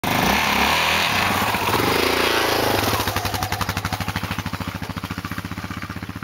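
Yamaha YFM700R Raptor quad's single-cylinder four-stroke engine revved for about three seconds, then dropping back to idle with a fast, even putter that slowly grows quieter.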